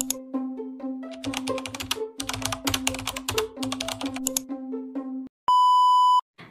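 Short intro jingle: a held electronic note and a little melody over fast keyboard-typing clicks. It cuts off about five seconds in, and near the end a loud, steady 1 kHz test-tone beep of the kind played with TV colour bars sounds.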